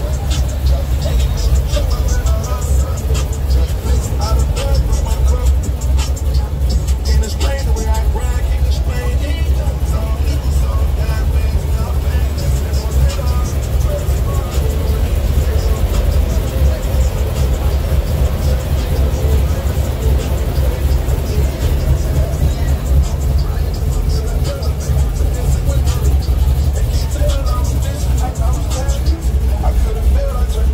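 Hip hop music playing loud with a heavy, steady bass line, rapped vocals mixed in.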